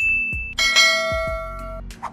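Bell-like chime sound effect: a single high ding, then a bright chord of several ringing tones held for about a second before cutting off. It plays over background music with a steady low beat of about two thumps a second.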